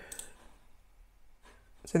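A few faint computer mouse clicks, spaced out, in a quiet room.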